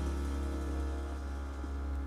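Closing chord of a small tenor-saxophone-led jazz band, its held notes slowly fading over a steady low hum in the recording.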